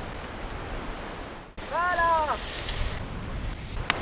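Steady outdoor wind noise on the microphone, cut off abruptly about a second and a half in, followed at about two seconds by a single short high-pitched cry that rises and falls.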